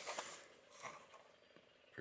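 Near silence, with faint handling rustles of a plastic blister pack on a cardboard card in the first second.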